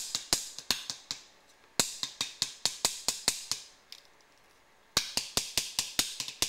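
Wooden maple fingerboard deck being popped and landed again and again on a tabletop: quick sharp wooden clacks, several a second, in three bursts with short pauses between. The clacks show off the deck's pop.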